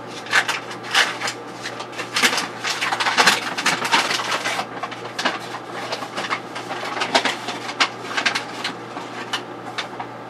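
Hands handling objects on a workbench: a quick, irregular run of rustles, clicks and light knocks, busiest in the first half, over a steady low hum.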